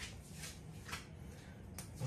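Quiet room tone with a few faint, brief clicks and rustles from gloved hands handling the painted canvas.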